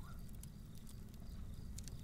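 Faint background ambience: a steady low rumble with light, irregular crackling ticks scattered through it.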